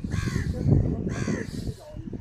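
A crow cawing twice, two harsh calls about a second apart, over a low rumble.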